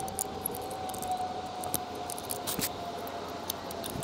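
Light metallic clicks and scrapes of a screwdriver working the screw on the sheet-metal terminal cover plate of a swamp cooler motor. A steady thin whine sounds underneath.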